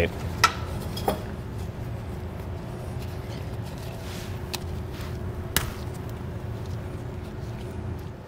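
Vinyl electrical tape being handled and wrapped around the cut ends of the trailer's electric-brake wires to cap them off: a few sharp small clicks and a short raspy peel about four seconds in, over a steady low hum of room noise.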